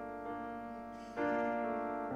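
Piano chords ringing and fading away, with a fresh chord struck a little over a second in.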